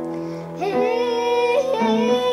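A young girl singing over instrumental accompaniment: a short break for breath about half a second in, then a long held note that slides up into pitch and carries small ornamental turns.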